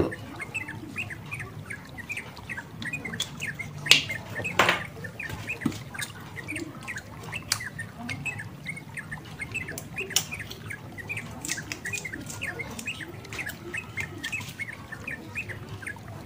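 Small birds chirping in quick, continuous repeats. A few sharp clicks stand out, the loudest about four seconds in, from a plastic bottle cap being handled.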